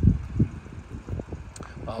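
Two low thumps about half a second apart, then faint steady outdoor background noise; a man's voice starts near the end.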